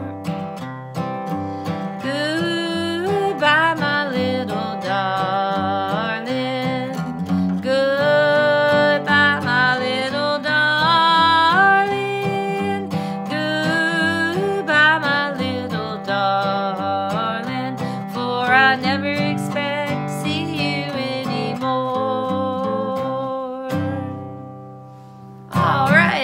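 A woman singing an old-time mountain song to a strummed acoustic guitar. The music dies away about two seconds before the end.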